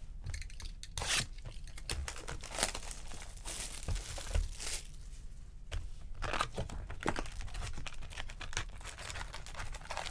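Trading-card packaging torn open and crinkled by hand, a box and its foil packs being handled. Irregular rips and crackles, with a longer stretch of tearing about three and a half to five seconds in.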